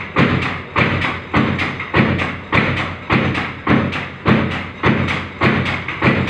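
Bath soap punching press, a motor-driven belt-and-flywheel stamping machine, striking soap bars in a steady rhythm of about two strokes a second, with a low steady hum underneath.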